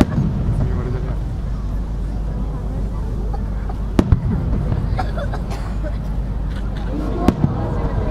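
Aerial firework shells bursting with sharp bangs: two in quick succession about four seconds in and another near the end. People are talking throughout.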